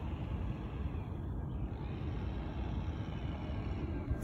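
Steady low rumbling outdoor background noise, without distinct events.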